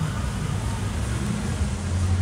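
Steady low rumble of a nearby car, its loud stereo's bass booming through fully open windows; the deep bass swells louder near the end.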